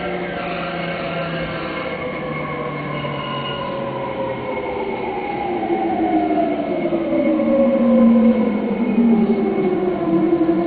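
E231 series electric train's inverter-driven traction motors whining, several tones falling steadily in pitch as the train brakes into a station, growing louder toward the end, with running noise underneath, heard from inside the car.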